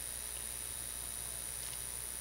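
Steady background hiss with a constant faint high-pitched whine and a low hum underneath: the recording's own noise floor, with no other sound.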